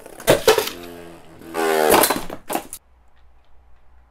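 Dread Fafnir Beyblade bursting apart in a plastic stadium: sharp clacks about a third of a second in, then a pitched whirring rattle as the loose pieces and the remaining top spin and skid, ending in a few clicks.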